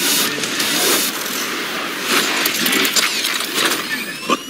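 Robot action trailer sound effects: dense metallic clanking and mechanical noise with several sharp hits.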